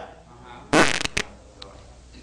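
A man blowing out a short, forceful puff of breath into a close microphone, about three quarters of a second in, with a brief click just after it.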